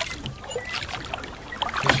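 Wooden rowboat being rowed: the oars work in their metal oarlocks with light knocks while the blades move through the water.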